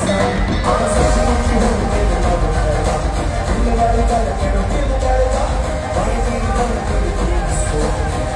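Live Punjabi pop music played loud through a hall's PA: a male singer's vocals over a band with heavy bass, recorded from among the audience.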